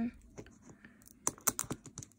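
Fingernails picking at the tear strip and wrapping of a toy surprise ball: a quick run of small sharp clicks and taps in the second half, after a quiet start.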